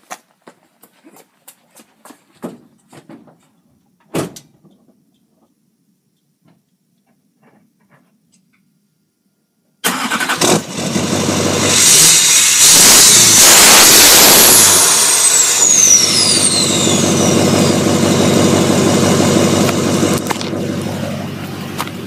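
Duramax diesel engine cold-starting. After several seconds of faint clicks, it fires suddenly about ten seconds in and runs loudest for a few seconds, with a high whistle falling in pitch. It then settles to a steady idle.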